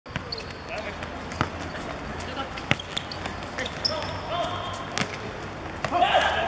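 A football being kicked and struck on an artificial pitch: a handful of sharp, separate knocks a second or more apart, with players' voices faint in the background.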